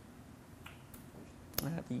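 Quiet room tone during a pause in speech, then a single short, sharp click about one and a half seconds in, just before speech resumes.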